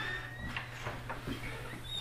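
Door being opened and a person stepping through: a few light, scattered knocks and footsteps over a steady low hum.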